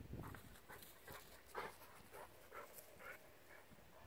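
Newfoundland dog giving a run of short, faint barks, about eight in a few seconds, the loudest about one and a half seconds in.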